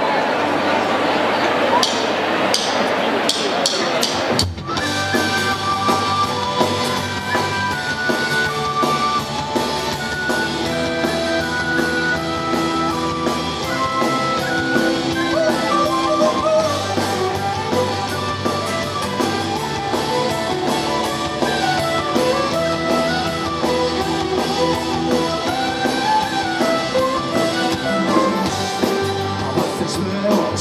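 Crowd noise for the first few seconds, then, about four and a half seconds in, a live folk-rock band starts abruptly into an instrumental intro: a violin melody over acoustic and electric guitars, bass and drums.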